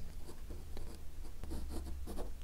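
Fine-tip Uni-ball ink pen scratching faintly across textured watercolour paper in a run of short drawing strokes.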